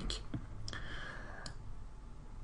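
Two light clicks about a second apart, with a faint steady tone between them, over quiet room tone.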